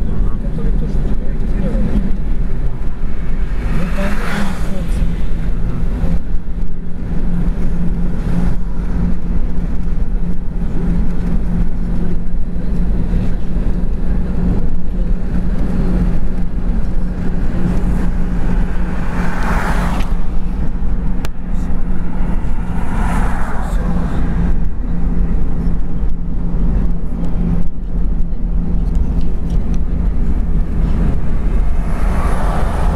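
A car in motion heard from inside, with steady road and engine noise and a low drone. Brief whooshing swells come about four seconds in and twice more past the middle.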